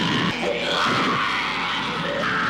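Horror film soundtrack: music mixed with high, wavering shrieking voices.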